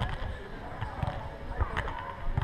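Footvolley ball being struck by players during a rally: a few thuds roughly a second apart, with distant voices around the court.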